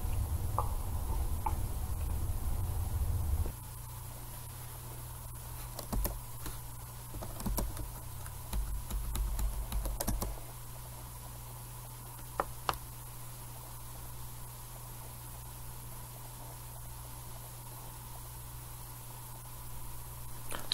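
Scattered clicks of computer keys being pressed, bunched in the middle of the stretch, over a steady low hum. A louder low rumble cuts out a few seconds in.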